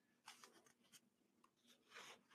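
Very faint, short scratching sounds on paper at a desk, several small strokes scattered through the moment.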